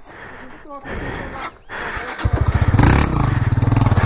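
Small motorcycle engine running low at first, then revving up about two seconds in and pulling hard, with a fast, even pulse, as the bike sets off over rough trail ground.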